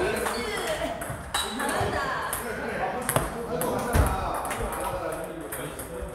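Table tennis ball hits from a rally, a few sharp clicks off the bats and table, the loudest about four seconds in, with voices chattering in the hall.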